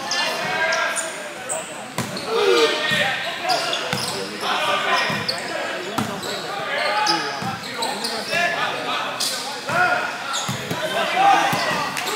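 Volleyball being hit in an echoing gym hall: several sharp slaps of hand on ball, spread across the rally, over a steady mix of shouting players and spectator chatter.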